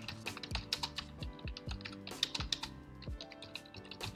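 Computer keyboard typing: a fast, irregular run of keystrokes as a line of text is entered, over quiet background music.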